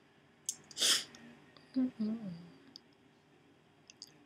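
A short, loud breathy burst about a second in, then a closed-mouth "mm-mm" hum. A few small wet clicks follow near the end as lip gloss is applied with a wand applicator.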